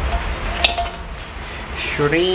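A spatula stirring shrimp, crabs and corn through a thick sauce in a wok, with one sharp clink against the pan about half a second in.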